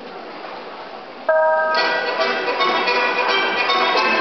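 Murmur of a large sports hall, then about a second in a bell-like note starts gymnastics floor-exercise music, played loud with a bright, chiming melody.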